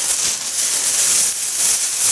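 Black plastic garbage bag rustling and crinkling loudly as it is handled and spread open, a continuous dense crackle.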